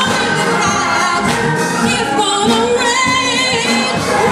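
Gospel choir of women singing live, with a woman singing lead into a handheld microphone over the choir.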